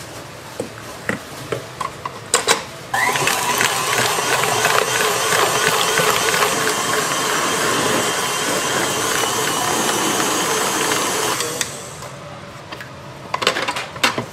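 KitchenAid stand mixer beating cream with its wire whisk attachment in a steel bowl. The motor starts abruptly about three seconds in, runs steadily for about eight seconds and then stops. Metallic clinks of the whisk against the bowl come before and after.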